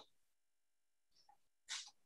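Near silence, broken near the end by one short, faint, noisy sound.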